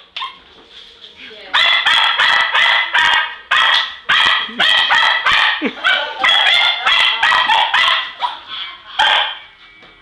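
English Cocker Spaniel barking excitedly in a fast, sharp run of about three barks a second, starting about a second and a half in and stopping near the end.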